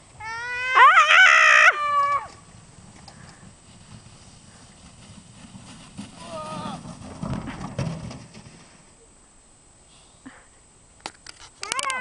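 A loud, high-pitched whooping shriek with a wavering pitch, lasting about a second and a half from just after the start. A shorter high cry comes around six seconds, with a low rumbling noise just after it. Quick sharp cries come near the end.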